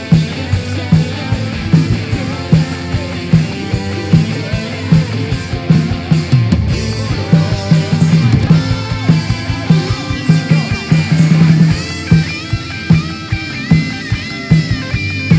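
Live band playing upbeat rock-style worship music: electric guitars and bass over a drum kit, with a steady kick-drum beat about twice a second.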